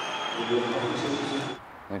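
Football stadium crowd noise from a match broadcast, fans cheering and chanting just after an equalising goal, with a thin steady high tone running through it. It cuts off sharply about one and a half seconds in.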